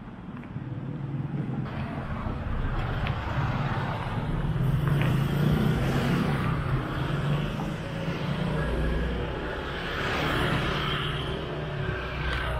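Cars driving past close by on a city street: engine rumble and tyre noise swell as they approach, loudest about halfway through, with a second, smaller swell near the end.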